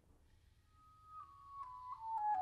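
Near silence after a chord has died away. From about a second in, a soft high woodwind note enters and steps downward note by note, growing louder near the end.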